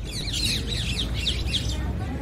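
Small birds chirping in a rapid run of short, falling high notes, over a low steady rumble.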